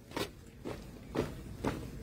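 Boots of a marching drill squad striking the ground in step, about two steps a second.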